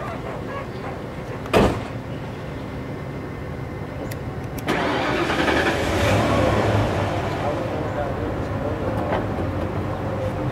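A single sharp knock about one and a half seconds in, the loudest moment. About five seconds in, a vehicle engine starts and keeps running with a steady low hum.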